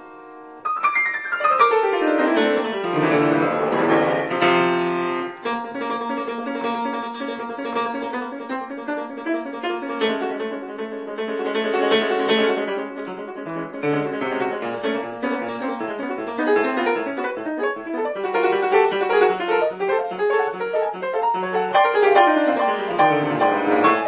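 Piano being played: a held chord dies away, then about half a second in a fast run sweeps down the keyboard and back up, followed by continuous passagework of arpeggios and chords.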